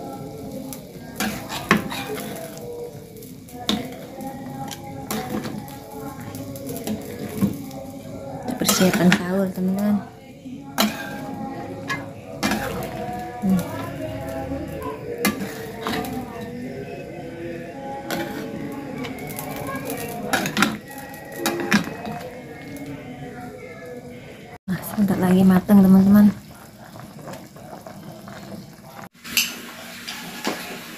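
A metal ladle stirs a large aluminium pan of chicken curry boiling in coconut milk, with repeated clinks and knocks against the pan over a steady bubbling.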